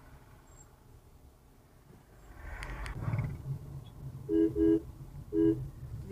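Vehicle horn sounding three short beeps, two in quick succession and then one more, over the low rumble of the car's engine heard from inside the cabin. The engine picks up briefly before the beeps as the car accelerates.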